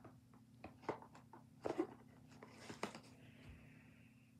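Faint scattered clicks and rustles, loudest a little under two seconds in and again near three seconds, over a low steady hum.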